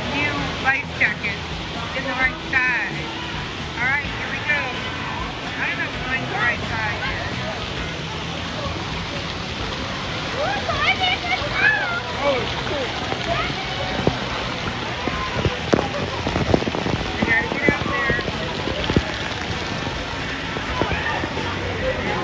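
Steady rushing and splashing of a water-park river current around floating swimmers, with people's voices and brief high-pitched calls over the water, most of them in the first few seconds and again later on.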